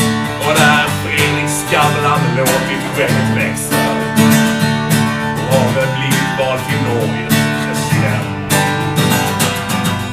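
Acoustic guitar strummed in a steady rhythm, an instrumental passage between verses of a Swedish ballad (visa).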